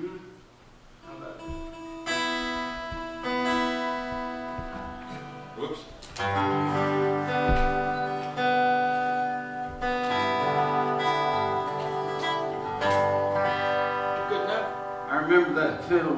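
Acoustic guitars being played: a few ringing single notes at first, then fuller ringing chords from about six seconds in.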